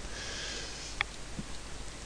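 A person breathing in through the nose, a soft sniff-like intake lasting under a second, followed by a single short click about a second in.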